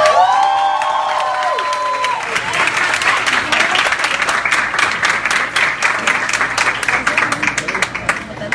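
A classroom full of students clapping and cheering. Several voices shout together in a long held cry for the first two seconds or so, then quick, dense applause runs on.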